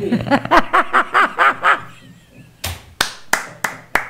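A woman laughing in a quick run of 'ha' pulses for about two seconds, then clapping her hands in slow, even claps, about three a second, from just past halfway.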